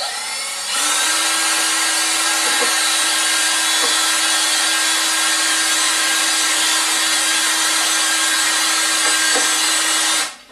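Electric drill spinning a degasser stick in a bucket of fermented wash, stirring out the dissolved gas. The motor spins up within the first second, then runs at a steady speed with an even whine.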